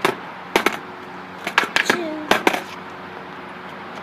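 Skateboard clacking on concrete: the tail and wheels strike the ground several times, partly in quick pairs, as the board is tipped up onto its tail and dropped back flat.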